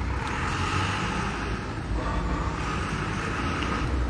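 Steady street traffic noise: vehicle engines running with a low rumble.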